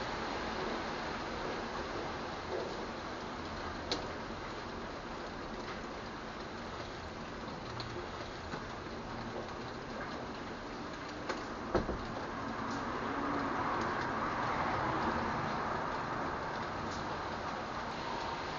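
Steady rain falling outside a window, with a few sharp taps of drops, the loudest a little past halfway. The rain noise swells louder for a few seconds about two-thirds through, then eases.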